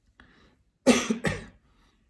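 A person coughing twice in quick succession about a second in, after a faint breath.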